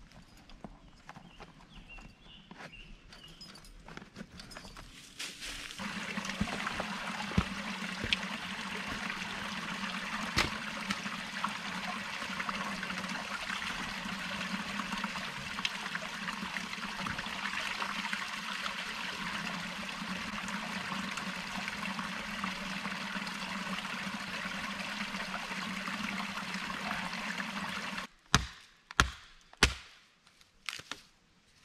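Small woodland stream running and trickling over rocks, a steady wash of water that starts about six seconds in and stops abruptly near the end. It is followed by a few sharp knocks.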